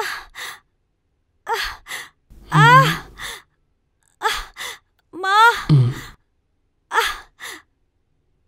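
A woman's pained gasps and sighs in short breathy bursts, mostly in pairs. Two longer moans rise in pitch, about two and a half and five and a half seconds in.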